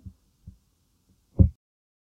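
A faint low thud about half a second in, then a louder, short, dull low thump about a second and a half in.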